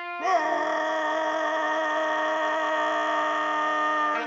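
Parade commander shouting a long drawn-out drill command: one held call that scoops up in pitch as it starts, is sustained for nearly four seconds, and drops away at the end.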